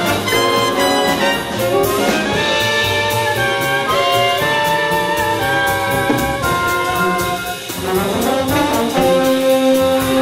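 High school jazz big band playing live: trumpets, trombones and saxophones hold chords over a steady drum beat, with a rising ensemble run near the end.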